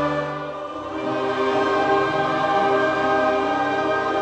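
Choir singing a hymn in long held chords, the chord changing just under a second in.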